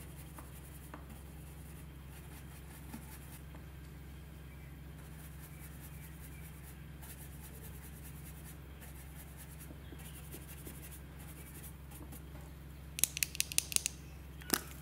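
Makeup brush rubbing and scratching over paper in soft strokes, over a steady low hum. About a second before the end comes a quick run of sharp clicks as a plastic lipstick tube is handled.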